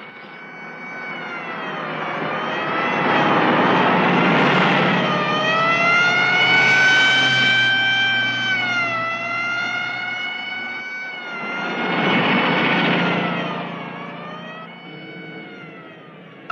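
A police car siren wailing, its pitch rising and falling slowly over the noise of speeding cars. It swells loudest in the middle, dips, swells again and fades toward the end.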